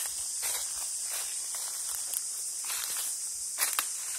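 Footsteps crunching and rustling through leaf litter and undergrowth, a few irregular steps with the loudest near the end, over a steady high insect drone.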